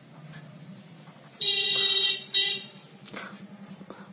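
Vehicle horn honking twice: a longer blast about a second and a half in, then a short toot.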